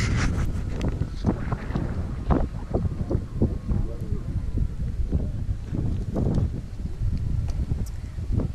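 Wind buffeting the camera microphone with a heavy, steady rumble, over irregular crunching footsteps on gravel.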